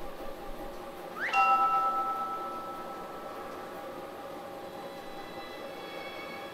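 Soft background film score: about a second in, a quick rising shimmer lands on a bell-like chime chord that rings out and fades over a couple of seconds. Soft held tones come in near the end.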